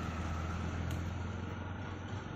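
A steady low motor hum over even street background noise, easing slightly toward the end.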